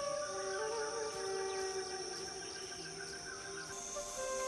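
Quiet documentary score of long sustained notes shifting slowly in pitch, over a steady high insect drone.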